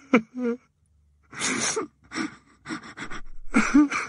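A person crying: sobbing wails and gasping, breathy sobs, with a short silence about half a second in.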